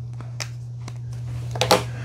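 Small plastic clicks as a nose hair trimmer's cutting head is handled and fitted back onto its body, a few taps with a sharper pair near the end, over a steady low hum.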